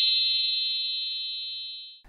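A bright, high chime ringing in several tones at once, fading slowly and cut off suddenly at the end: an edited-in bell sound effect.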